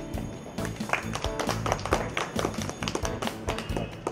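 Background music with quick percussive hits.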